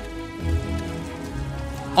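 Steady rain falling, a soundtrack rain effect, with soft background music of held notes underneath.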